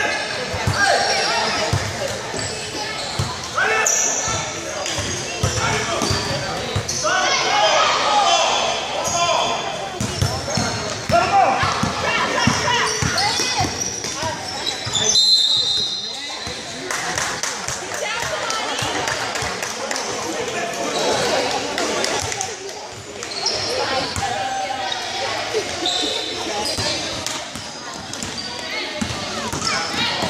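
Basketball dribbling and bouncing on a gym floor during a youth game, with squeaks and thuds of play, under spectators' chatter and shouts that echo in a large hall.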